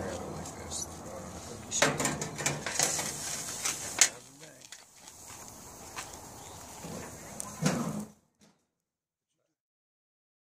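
Metal tongs, grill grates and a metal baking sheet clank and scrape as a cedar plank of grilled salmon is lifted off a gas grill, with a few sharp knocks. The sound cuts off completely about eight seconds in.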